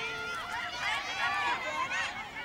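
Several high-pitched children's voices shouting and calling out at once, overlapping.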